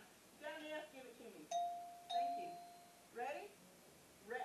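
A bell struck twice at the same pitch, about half a second apart, each strike ringing clearly and then fading, with brief bits of talk before and after.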